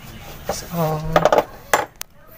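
Several sharp metallic clinks of a hand tool knocking against the steel air lines and fittings of a truck's air dryer, grouped in the second half, with a brief pitched sound just before them.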